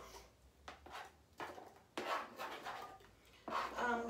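Chef's knife scraping diced apple off a plastic cutting board, the pieces dropping into a glass pitcher of wine in a few separate bursts. A voice starts near the end.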